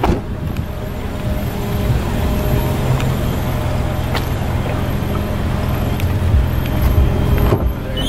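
Car engine idling with a steady low hum, with a few light clicks.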